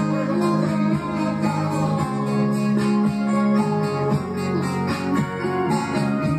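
Acoustic guitar being played, a steady run of held chords and picked notes.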